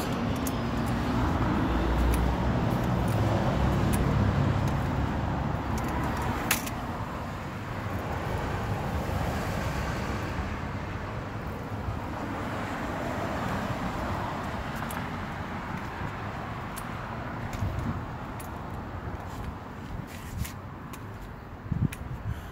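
Steady outdoor background noise with a low hum of road traffic, a few faint clicks from the phone being handled, and one sharper tick about six and a half seconds in.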